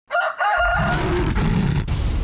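Intro sound effects: a high, wavering call in two short parts, like a crow, over a deep low rumble that sets in about half a second in and carries on.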